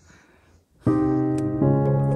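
Background piano music: after a quiet first second, a sustained piano chord comes in and changes to a new chord shortly after.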